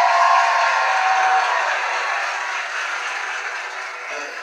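Studio audience applauding and cheering after a TV show host's introduction, the noise slowly dying down.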